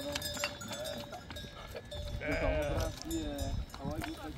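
A mixed flock of sheep and goats bleating while crowding close, with one loud wavering bleat about two seconds in and a few short clicks in between.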